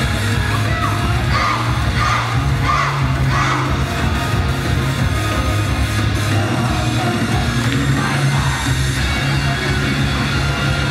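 Loud live idol-pop music through a concert hall's sound system, heavy steady bass, with the crowd shouting and cheering over it: a run of about four rhythmic shouts in the first few seconds.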